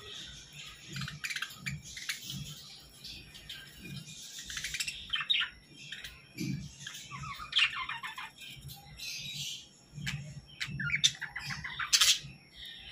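A flock of caged budgerigars, Hagoromo budgies among them, chirping and warbling: many quick, overlapping chirps and squawks throughout.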